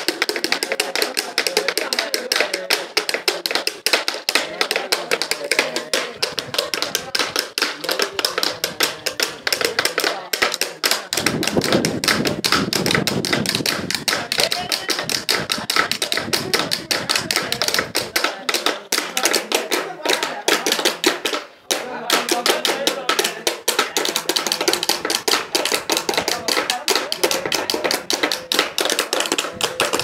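Rapid, continuous tapping of thin bamboo sticks on hollow green bamboo tubes, played as an improvised percussion beat, with a brief break about three-quarters of the way through.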